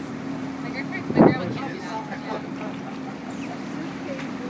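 A motorboat engine running at slow harbour speed, a steady low hum, with people talking over it and one loud voice about a second in.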